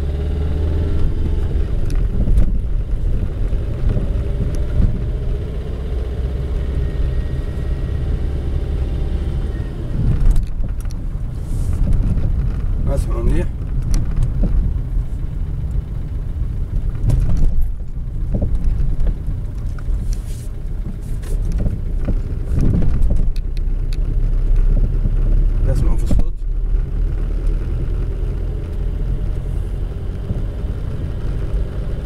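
Car cabin while driving slowly over a rough road: a steady low rumble from the tyres and running gear, broken by irregular dull knocks from the rear suspension over bumps. The knocking is the rear-end noise that the mechanic puts down to worn rubber, a silent-bloc bushing, rather than metal on metal.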